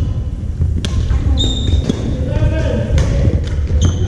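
Badminton rally on a hardwood gym floor: sharp racket-on-shuttlecock hits about a second in and again near three seconds. Short high shoe squeaks on the court come between them, over a reverberant hall full of voices and play from other courts.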